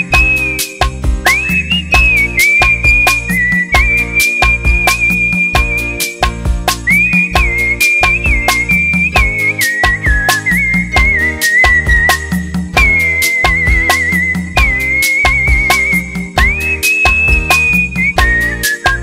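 A person whistling the melody of a Tamil film song over a band accompaniment with a steady beat and bass. The whistle slides up into each phrase and breaks into a quick warbling trill a little past the middle.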